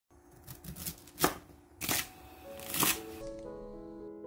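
Chef's knife slicing through raw cabbage leaves onto a wooden cutting board: several crisp crunching cuts, the loudest a little over a second in. Soft piano music comes in over the last second and a half.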